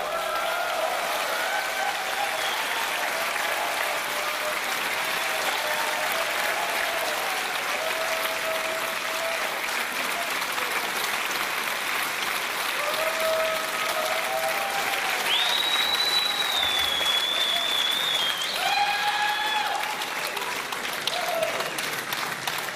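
Concert audience applauding and cheering after a song ends, with scattered shouts and a long high whistle past the middle.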